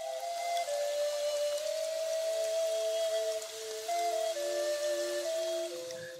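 Soft background music: a slow melody of long held, pure-sounding notes, joined by a second, lower line about two seconds in, over a faint steady hiss.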